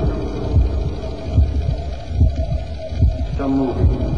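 Low, regular thumping pulse, a little more than one beat a second, over a steady droning hum, with a brief falling voice-like sound about three and a half seconds in.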